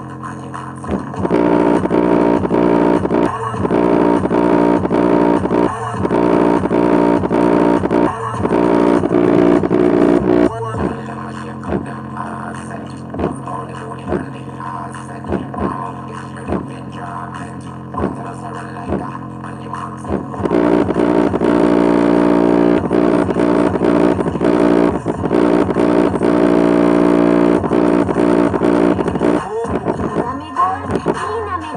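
Music with a heavy, steady beat played at maximum volume through a small portable Bluetooth speaker. It is loud for the first ten seconds or so, drops to a quieter passage, and turns loud again about twenty seconds in.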